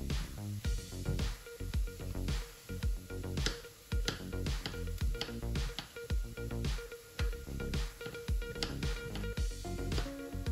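Kitchen knife cutting zucchini into cubes on a bamboo cutting board: irregular knocks of the blade striking the wood through the soft vegetable, over background music.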